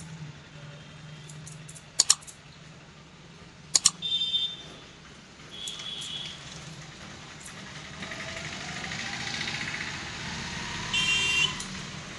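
Barber's scissors snipping hair in quick double snips, about two seconds in and again near four seconds, over a steady low hum. Short high horn beeps sound around four and six seconds, and a longer, louder horn near the end, from passing vehicles.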